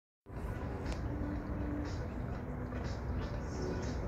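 Outdoor ambience over a city: a steady low rumble of distant traffic with faint voices, starting just after the clip begins.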